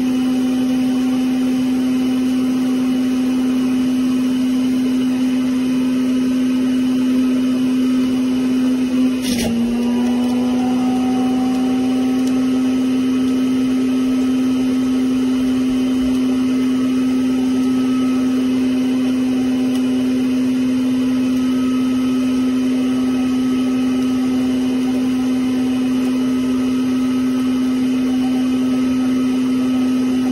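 Magic Bullet Mini Juicer MBJ50100AK, a small centrifugal juicer, running with a steady motor hum. About nine seconds in there is a brief knock, and the hum's pitch dips for a moment before settling again.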